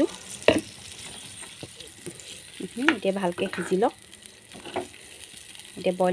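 Pork pieces frying and sizzling in curry in a pan while a metal ladle stirs them, with a sharp knock of the ladle against the pan about half a second in.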